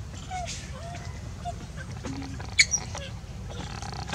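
Short faint squeaky calls from monkeys over a steady low background rumble, with a sharp click about two and a half seconds in, followed by a smaller one.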